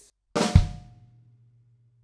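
A single 'splat do' drum fill on a drum kit: a flam on the snare drum, then a bass drum kick a fifth of a second later, both ringing out and fading over about a second.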